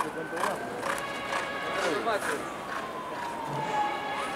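Faint background voices, with a thin steady tone and a second thin tone that slowly falls in pitch over the last second and a half, bending upward at the end.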